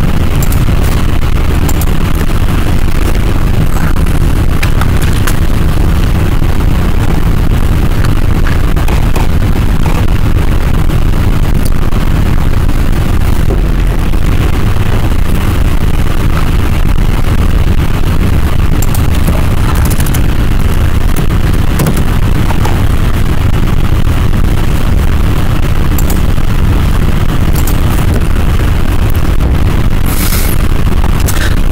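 Loud, steady rumbling and hissing noise from a faulty microphone, heaviest in the low end, with a few faint clicks over it near the end.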